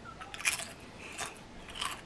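Chips being bitten and chewed with the mouth close to the microphone: three main crisp crunches.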